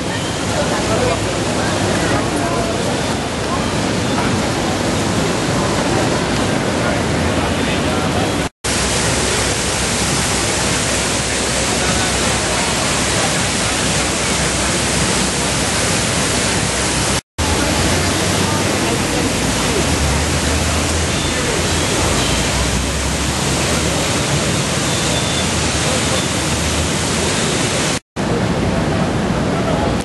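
A steady rush of water from the Prometheus fountain's jets, with people's voices mixed in. The sound cuts out for a split second three times.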